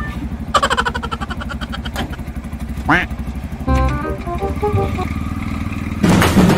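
Auto-rickshaw's small engine running with a steady low putter throughout. Added sound effects sit over it: a quick rising glide about three seconds in, then a short run of stepped electronic notes.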